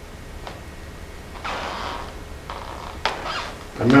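A pause in a man's speech on a headset microphone: faint steady room hum with a couple of soft rushes of noise and a click, then his voice starts again near the end.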